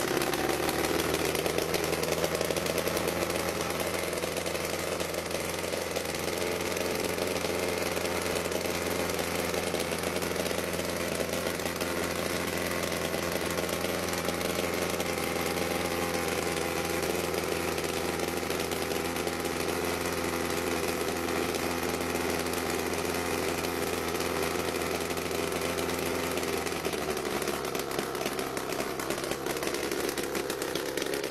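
Small engine of a homebuilt single-seat helicopter running steadily just after starting, a rattly mechanical drone; its note shifts near the end as the rotor turns faster.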